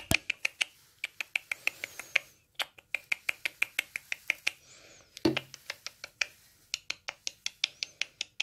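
A person making quick kissing clicks with the lips, in runs of about six a second, to coax a dwarf hamster toward a cup. There is a short low thump about five seconds in.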